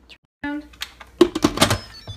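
Instant Pot lid being set on the pressure cooker and turned to latch: a quick run of sharp plastic-and-metal clicks and clatters in the second half.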